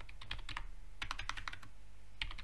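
Computer keyboard typing: two short runs of quick key clicks, one about half a second in and another starting about a second in.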